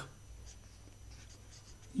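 Felt-tip marker writing on paper: a few faint, short scratchy strokes.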